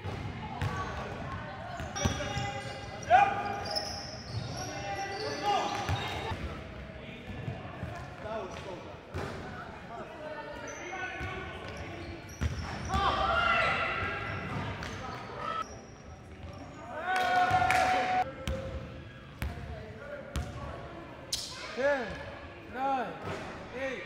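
Live court sound of a pickup-style basketball game in a large gym: a basketball bouncing on the hardwood floor in sharp, irregular knocks, with players' indistinct voices and calls, all ringing in the hall's echo.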